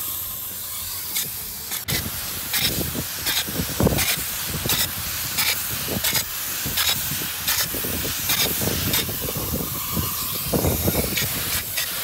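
Spray gun hissing steadily as it sprays closed-cell polyurethane foam onto corrugated roof sheets, with a regular pulse in the hiss somewhat more than once a second.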